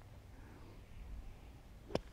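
A golf club striking through bunker sand, a single short, sharp hit near the end, as a greenside bunker shot is played. Before it there is only faint outdoor background.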